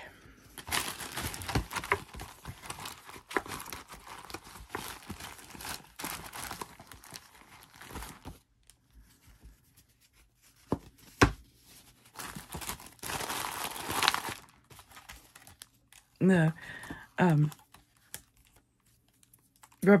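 Old paper bingo cards and a plastic zip-top bag of markers rustling and crinkling as they are handled in a cardboard game box. There are two long stretches of it, with a couple of sharp knocks in between, and two short vocal sounds near the end.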